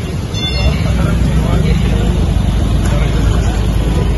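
Steady low rumble of bus engines running at a busy bus stand, with people talking in the background.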